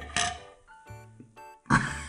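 A person's throat reacting to a strong, bitter sip of coffee drink: a short breathy grunt at the start, then a sharp cough near the end, over light background music.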